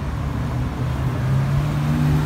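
City street traffic: cars driving past on a busy avenue, with a steady low engine hum and tyre noise. One vehicle's engine grows louder in the second half as it passes close by.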